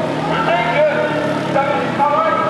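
A man's voice through a megaphone, too blurred for the words to be made out. A low steady drone runs underneath for the first second and a half.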